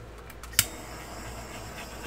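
Small handheld torch hissing steadily as it is passed over wet acrylic pour paint, with one sharp click a little over half a second in.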